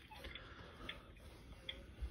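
Near silence: room tone with a low rumble and a few faint, separate ticks.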